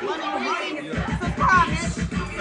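A woman talking excitedly over background chatter, with music coming in about a second in.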